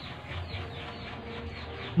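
A faint, drawn-out bird call in the background, over low room noise.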